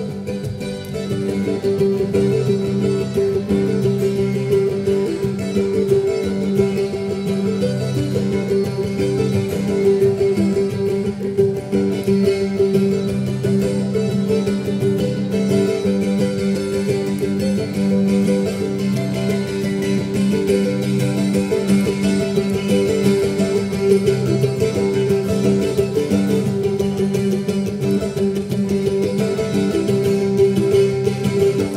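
Acoustic guitar and mandolin playing an instrumental passage together: a steady, driving rhythm over a held low note.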